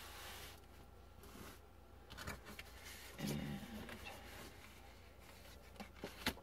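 Tarot cards being gathered up and slid across a tabletop: faint rustles and light taps. A short hummed 'mm' comes about halfway through.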